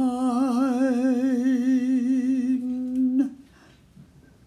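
A singer holding the song's final note unaccompanied: one long note with a wide, even vibrato that stops abruptly a little over three seconds in.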